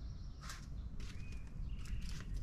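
Quiet outdoor yard ambience: a low rumble, a few soft clicks and taps, and one brief high chirp about a second in.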